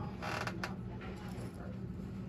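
A brief creak over a steady low hum.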